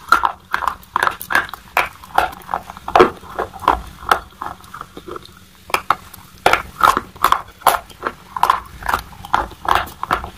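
White chalk sticks being bitten and chewed close to a microphone: a run of sharp, dry crunches, about two or three a second, with a short break a little before the middle before the crunching starts again.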